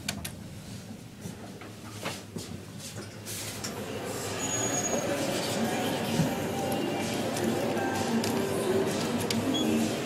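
Westinghouse/Schindler traction elevator: a couple of light clicks from its car button, then from about four seconds in the car's running noise rises and carries on steadily as the car travels.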